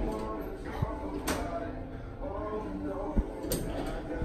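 Schindler elevator machinery humming steadily, with a few faint sharp clicks scattered through it.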